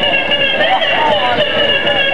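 Beatboxer performing into a handheld microphone: an unbroken, wavering vocal melody line with faint percussive hits underneath.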